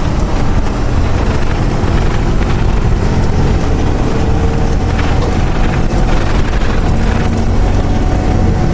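Truck driving on a gravel road, heard from inside the cab: the engine runs steadily under a continuous rumble of tyres on gravel.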